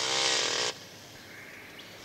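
Chainsaw engine running at high revs, its pitch rising slightly, then cutting off abruptly under a second in.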